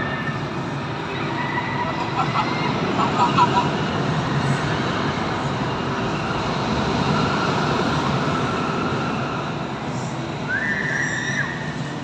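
Steady rumbling din of an indoor theme park, ride machinery and a wash of distant crowd voices, with no single sound standing out.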